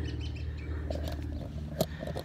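Faint bird chirps in the background over a low steady rumble, with a single sharp click near the end.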